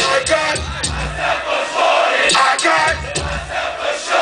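Live hip hop concert heard from among the audience: the beat plays through the PA with a crowd shouting over it. The bass drops out for about two seconds midway, leaving mostly crowd noise.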